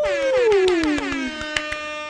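Short title-card music sting: a pitched tone with many overtones glides down in pitch over about a second, then holds steady, with clicking percussion running through it.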